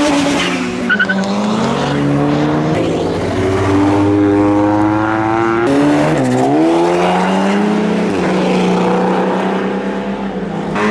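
Car engines accelerating past. One engine climbs steadily in pitch for a few seconds, drops sharply a little past halfway as at a gear change, then pulls on more evenly. There is a brief sharp sound about a second in.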